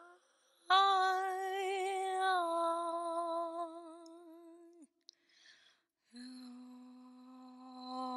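A voice humming long held notes with vibrato: one note from about a second in until nearly five seconds, then after a short break a lower, steadier note from about six seconds.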